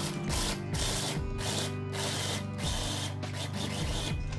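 Small electric mini chopper running steadily while its blade grinds walnuts to a fine crumb. The grinding noise dips briefly every half second or so.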